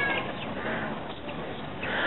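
Faint, even background noise of an outdoor market in a pause between amplified phrases, with the last syllable of a voice fading out at the very start.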